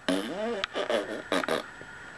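Short wordless vocal sounds from a person, their pitch bending up and down, with a few sharp clicks between them.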